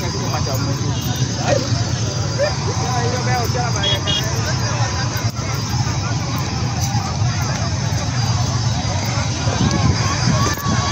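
Motorcycle engine running with a steady low hum, under indistinct voices talking. Two short high beeps sound about four seconds in.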